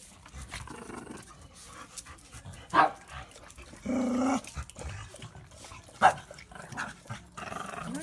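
Dogs growling and barking at each other in a brief squabble: two sharp barks about three and six seconds in, with a half-second growl between them. The dogs are getting worked up with one another.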